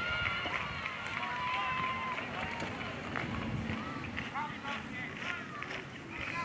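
Distant shouting and calling from Australian rules footballers and spectators on the ground, many short calls and one longer held call about a second in.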